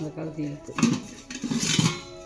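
Antique metal pots knocking and scraping against each other as they are handled, with a clatter about a second in and another near the end.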